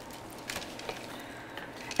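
Faint soft taps and squishes as a metal measuring cup knocks out a scoop of wet beet-burger mixture onto a parchment-lined sheet pan. There are a couple of light clicks about half a second and a second in, over quiet room tone.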